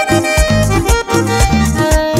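Vallenato music: a button accordion plays an instrumental passage over a bass line and a steady beat.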